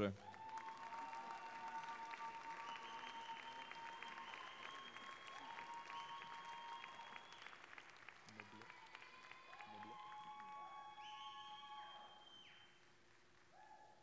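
Audience applauding, the clapping quiet and fading out near the end, with a few held high tones over it.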